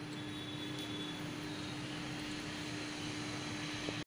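Steady background drone: an even hiss with one constant low hum, unchanging throughout, with a small click near the end.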